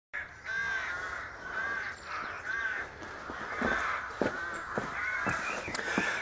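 A crow cawing over and over, about one call a second. Several short knocks and bumps come in the second half.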